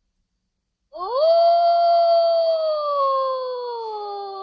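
A wolf's single long howl, beginning about a second in: it rises quickly in pitch, holds, then slowly slides down.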